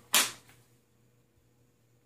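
A Glock 19 pistol is drawn quickly from a Kydex appendix inside-the-waistband holster: one short, sharp swish as it clears the holster, just after the start, fading within half a second.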